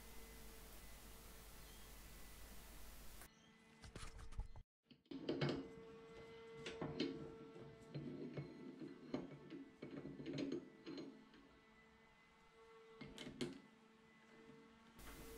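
Faint steady hiss for about three seconds, then scattered light clicks and knocks as a brass rod is set into a metal lathe's chuck and the chuck is tightened with a chuck key.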